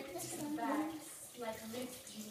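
A young girl's voice speaking softly and indistinctly, half-murmured words.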